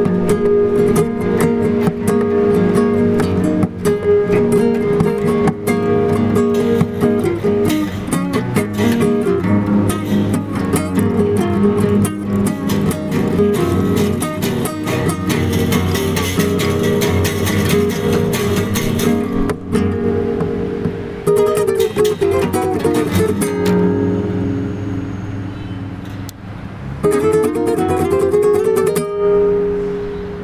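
Instrumental acoustic guitar music, with strummed chords and a picked melody. It eases into a softer passage about two-thirds of the way through, then comes back loud near the end.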